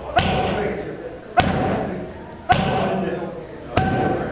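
Boxing gloves smacking into focus mitts: four hard punches about a second apart, each a sharp smack that trails off.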